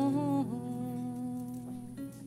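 A woman humming wordlessly, her voice bending through a few pitches in the first half-second and then holding one long steady note, with a kora sounding softly underneath.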